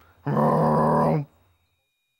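An American bullfrog gives one deep, drawn-out call, the "jug-o-rum" of its advertisement call. It lasts about a second, starting a quarter of a second in.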